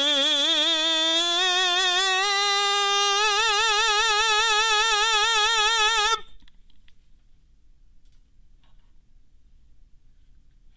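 Male tenor singing a sustained 'oo' vowel in a musical-theater style into a nasalance mask held over his mouth and nose. The note glides slowly upward from about D4 to A4 and is then held with steady vibrato, stopping abruptly about six seconds in. A few faint clicks follow.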